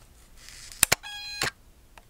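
A Canon EOS 1000D DSLR with a failed shutter being fired: two quick clicks, then a short beep-like tone about half a second long instead of a normal shutter sound.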